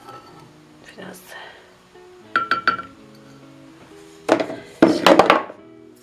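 A wooden spoon knocking against a large glass jar while a vinegar mother is worked loose from the jar of vinegar. There are a couple of short ringing clinks about halfway through, then a louder clatter of knocks near the end.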